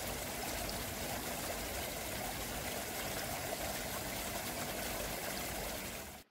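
Seawater running steadily in a tank holding live oysters.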